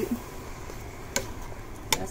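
Metal slotted spatula stirring a bubbling sauce in a pot over a steady fizzing hiss. It knocks sharply against the pot twice, a little past a second in and again just before the end.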